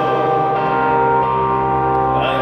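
Live electronic band music in an arena: sustained synthesizer chords held as steady, ringing tones in a pause between sung lines.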